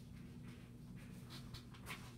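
Faint rustling and scratching, a few short scrapes with the last near the end the loudest, over a steady low electrical hum.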